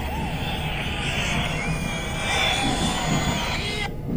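Seoul Metro Line 4 subway train running: a steady low rumble under a higher hiss with faint squealing tones, and the hiss cuts off suddenly near the end.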